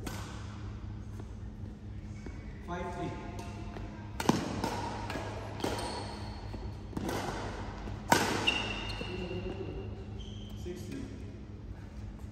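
Badminton rackets striking a shuttlecock in a rally: four sharp hits, one about every second and a quarter from about four seconds in, echoing in a large sports hall over a steady low hum.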